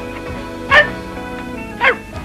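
Cartoon dog barking twice, about a second apart, over steady background music.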